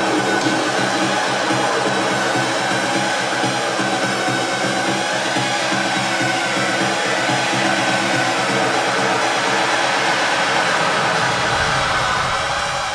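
Electronic techno music played live, in a breakdown: a dense rushing noise wash with held synth tones and slow sweeping pitches, the kick and bass cut out. Deep bass comes back in near the end.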